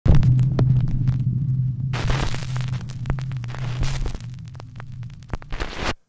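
Horror-intro sound effects: a low electrical hum with crackling, clicking static, like a damaged old film, and a burst of hiss about two seconds in. The hum fades away near the end.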